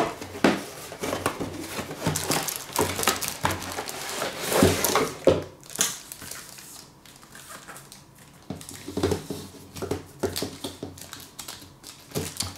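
Cardboard box flaps and plastic wrap rustling and crinkling as a boxed camping cookset is unpacked, with irregular light knocks of the metal cookset set against the table. It goes quieter for a couple of seconds past the middle, then the handling picks up again.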